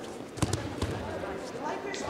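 Judo players hitting the tatami mat in a takedown: a sharp thud about half a second in, then a second, duller thump, with voices in the hall.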